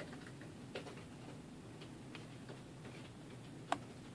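Faint, scattered ticks and scrapes of a thin metal tool worked along the seam of a plastic computer mouse shell, digging out packed grime, with one sharp click near the end.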